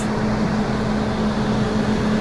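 Retrotec blower door fan running steadily at about 91% speed as suction on a test box, pulling roughly 1600 CFM: an even hum with a constant low tone.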